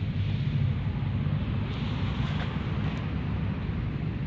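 Steady low hum with an even hiss over it, and a few faint clicks around the middle.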